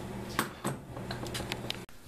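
A handful of light clicks and taps from a printed circuit board being handled in the fingers, over a steady low electrical hum. The sound cuts off abruptly near the end.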